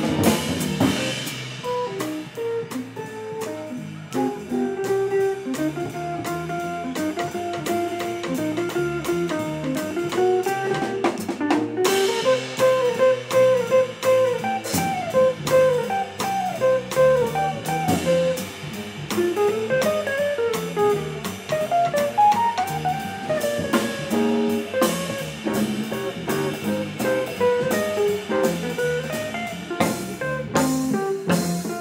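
A small jazz band playing live: a hollow-body electric guitar plays single-note melodic lines over walking upright bass and a drum kit, with steady cymbal ticks and a sharp drum accent a little before halfway.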